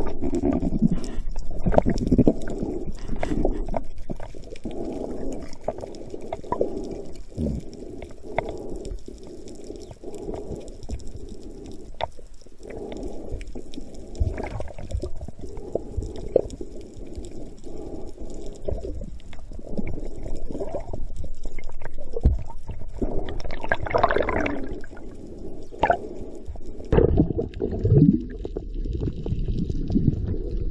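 Muffled underwater sound heard through a camera housing: water churning and gurgling around the camera. A few sharp knocks are scattered through it, and louder gurgling swells come near the end.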